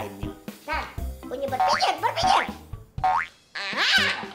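Comedy background music with cartoon sound effects: a run of sliding, boing-like pitch glides, a brief drop-out about three and a half seconds in, then a quick rising glide.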